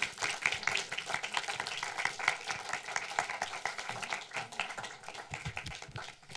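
Audience applauding: many hands clapping irregularly, thinning out near the end.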